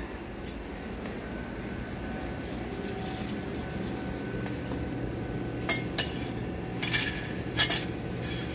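Quartz boat of silicon wafers clinking against the quartz furnace tube as it is loaded: a few sharp glassy clinks in the second half, over a steady low hum.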